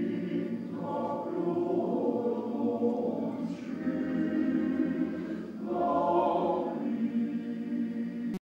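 Male voice choir singing together.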